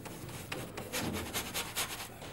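Paintbrush bristles scrubbing over the surface of a large model moon in quick repeated strokes, several a second, growing louder about half a second in.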